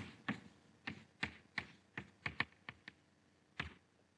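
Chalk tapping on a blackboard as words are written: a faint run of short, irregular taps, about two or three a second.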